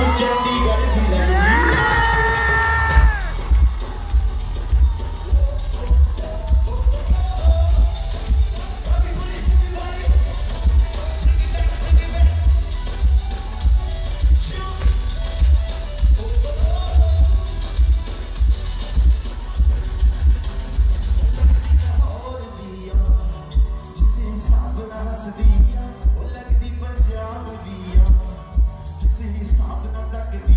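Live Punjabi pop band playing loudly through a concert PA, with a heavy pulsing bass beat and a male singer's vocal line near the start. About three-quarters of the way through, the music thins out and drops in level while the beat keeps pulsing.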